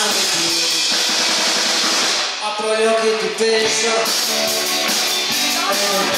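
Live rock band playing, with drum kit and pitched instruments; the drums and cymbals break off about two seconds in and pick up again about four seconds in.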